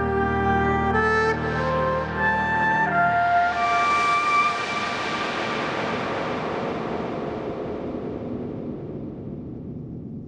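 Background music: held melodic notes for the first three seconds or so, then a long swelling wash that slowly fades out.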